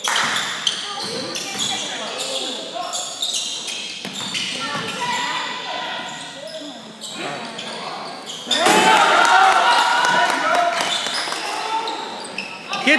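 Basketball bouncing on a hardwood gym floor amid the voices of players and spectators, echoing in the hall; the voices get louder about eight and a half seconds in.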